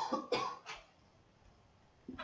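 A person coughing, three short coughs in quick succession in the first second, the last one weakest.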